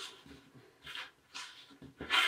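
Faint rustling of folded pattern paper being handled and pressed together by hand: a few soft, brief brushes.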